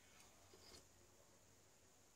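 Near silence: faint background noise only.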